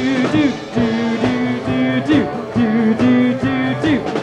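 Live rock band playing an instrumental stretch: an electric guitar repeats a held note with a bend about every two seconds, over steady drum hits.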